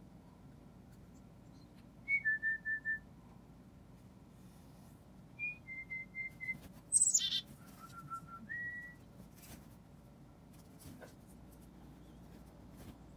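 Human whistling in short pure notes, a higher note followed by four lower ones, about two seconds in and again about five seconds in, answered about seven seconds in by a black-capped chickadee's sharp high call sweeping down in pitch, the loudest sound. More low whistled notes and a short rising whistle follow.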